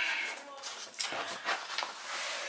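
A package being opened by hand: rustling and scraping of the packaging, with a few sharp ticks.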